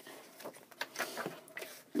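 Handling of a cardboard DVD box and paper booklet: faint rustling with a few light taps and clicks.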